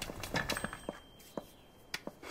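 A handful of light, separate knocks and taps, about five in two seconds, like footsteps and things being handled in a quiet room.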